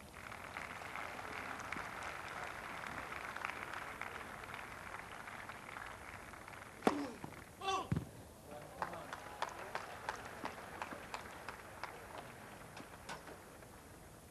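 Crowd applause around a grass tennis court, dense for the first six seconds, then thinning to scattered separate claps. About seven seconds in there is a sharp crack followed by a short voice-like call.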